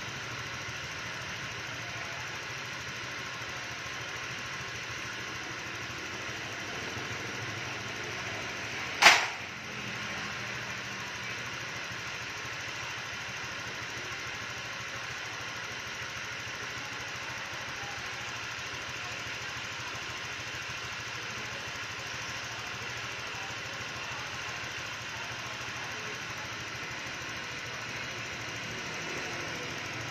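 Fuel-injected Honda scooter engine idling steadily. About nine seconds in, a single loud, sharp crack cuts over it.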